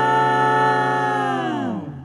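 Five-voice a cappella group holding the final chord of the song, then all voices sliding down in pitch together and stopping just before the end.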